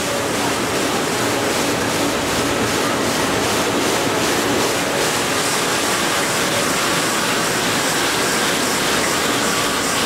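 Large four-colour offset printing press running: a loud, steady, even mechanical noise.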